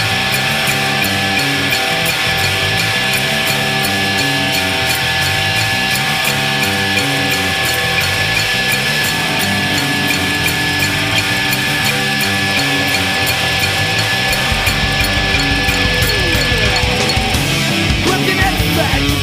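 Loud rock band recording: distorted electric guitars with long held ringing notes over a stepping bass line and steady drums. The low end grows heavier about three-quarters of the way through.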